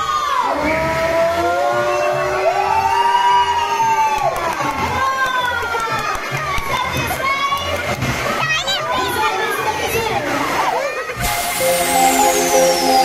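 A crowd of children shouting and cheering, many high voices overlapping, over music with a low pulsing beat. Near the end it cuts to an outro jingle with a long falling whistle.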